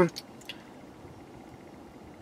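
Faint, steady background hiss with one or two small clicks about half a second in.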